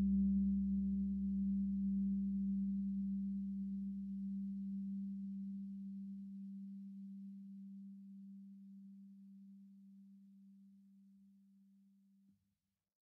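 A single low sustained ringing tone slowly dies away over about twelve seconds and cuts off just after. A deeper rumble beneath it stops about halfway through.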